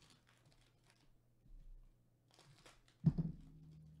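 Plastic wrapper of a baseball card pack crinkling as it is handled and torn open, with one sharp knock about three seconds in.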